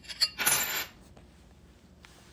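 Half-dollar coins clinking as they are handled: a couple of light clicks, then a short metallic rattle about half a second in.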